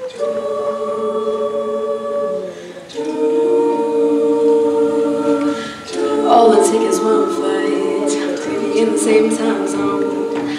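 Mixed-voice a cappella group singing sustained wordless chords. The chords break off and shift twice, and from about six seconds in the voices move more and short sharp clicks join in.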